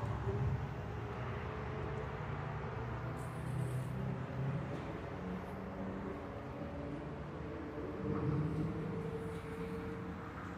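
Race car engines on the circuit heard from a distance: a steady low drone whose pitch drifts slowly up and down, with no car passing close by.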